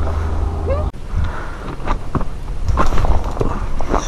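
Footsteps scrambling up loose riprap rocks and gravel: irregular crunches and knocks of stone underfoot. A low steady rumble in the first second cuts off suddenly.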